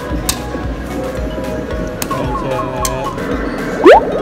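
Electronic claw-machine arcade music and game sound effects: a run of short falling beeps past the middle, then a loud rising sweep just before the end, with a few sharp clicks along the way.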